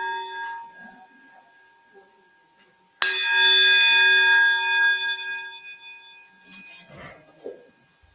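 A bell rings with several clear tones, fading, and is struck again, louder, about three seconds in. It then rings out slowly over the next few seconds.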